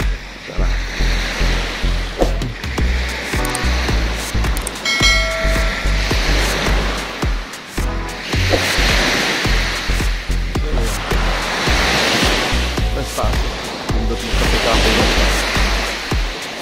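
Surf washing onto a sandy beach in swells, with wind rumbling on the microphone. A short pitched chime sounds about five seconds in.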